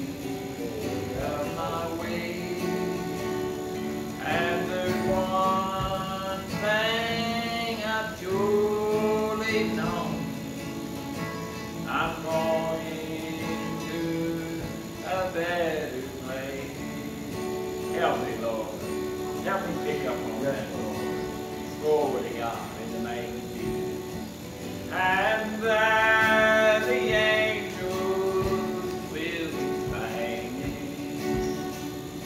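Gospel music: a man singing sustained phrases with guitar accompaniment.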